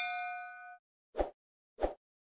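Sound effects of an animated subscribe button: a notification-bell ding rings out and fades within the first second. It is followed by two short soft pops, about two-thirds of a second apart.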